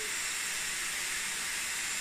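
Dyson Airwrap blowing hot air through its 40mm curling barrel, a steady even hiss, while a wound section of hair heats to set the curl before the cold shot.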